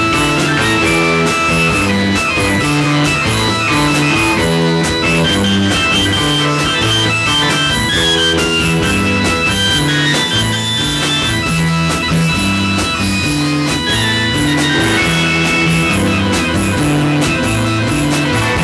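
Live garage rock band playing an instrumental passage without vocals: electric guitar to the fore over drums with regular cymbal hits and a stepping low bass line, loud and steady throughout.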